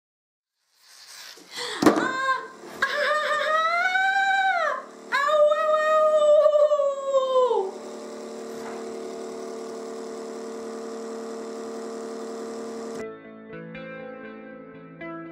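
A sharp knock, then a woman crying out twice in long, loud wails that rise and fall away in pitch: a staged cry of pain for a fake nail-drill cut. A quieter steady hum follows, and guitar music comes in near the end.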